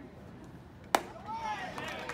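Baseball bat striking a pitched ball about a second in, one sharp crack, followed by voices yelling as the ball is put in play.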